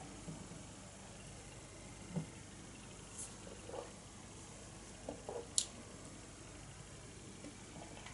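Quiet room with a few faint, short mouth sounds of a man sipping and swallowing a beer, and one sharper click a little past halfway.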